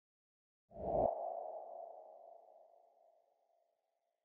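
Logo sound effect: silence, then under a second in a single low hit with a ringing ping that fades away over about three seconds.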